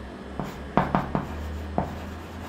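Chalk writing on a chalkboard: about five short, sharp taps and scrapes as the chalk strikes and strokes the board.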